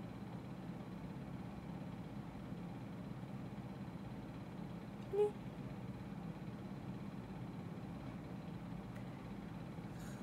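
Steady low hum of room noise, with one short spoken syllable about halfway through.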